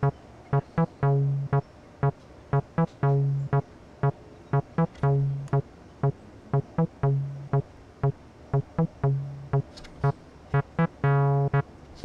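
Abstrakt Instruments Avalon Bassline, an analog TB-303 clone, playing a sequenced acid bassline of short plucky notes mixed with a few longer held ones. The filter envelope decay is turned longer, so a held note near the end rings out brighter.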